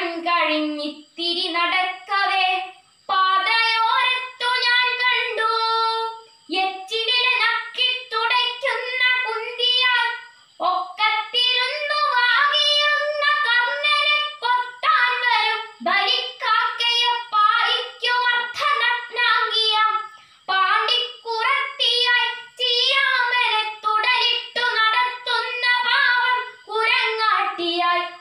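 A young girl's solo voice chanting a Malayalam poem to a sung melody, unaccompanied, in phrases broken by short breaths every few seconds.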